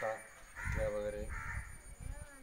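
A bird calling several times, mixed with a man's voice.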